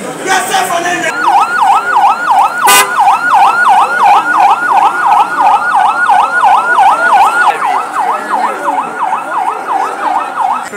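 Electronic vehicle siren in a fast yelp, its pitch sweeping up and down about three times a second, starting about a second in. One sharp click cuts through it about three seconds in.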